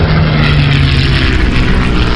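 Sound effect of a propeller airplane: a steady engine drone over a heavy low rumble, with a rushing hiss that swells from about half a second in.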